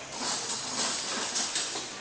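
Brown rice pasta and coconut oil sizzling in a hot pan, a steady hiss.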